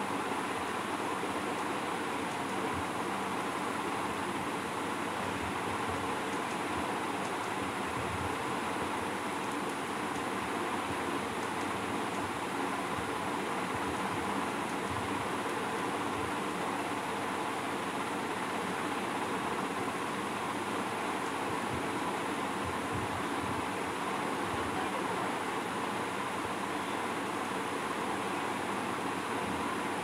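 Steady, even background noise, a hiss and rumble with no distinct events.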